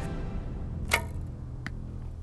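An arrow shot from a bow at an archery target: one sharp crack about a second in, then a fainter click a moment later.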